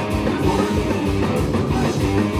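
Live rock band playing at full volume: electric guitar, electric bass and drum kit.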